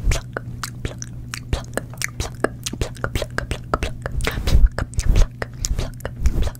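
Close-miked ASMR mouth clicks and pops, a quick irregular run of many, used as 'pluck' sounds for mimed tweezer plucking of eyelashes. A low steady hum runs underneath.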